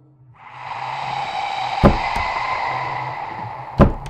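Film score sound design: a sustained hissing drone with a steady tone that builds over the first second, struck by two sharp hits about two seconds apart, the second near the end.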